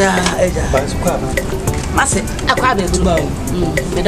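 People talking over a steady hiss, with a run of short sharp ticks at fairly even spacing.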